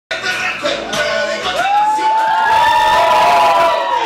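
Audience cheering, with several long high-pitched whoops that rise and are held for about two seconds from about halfway in.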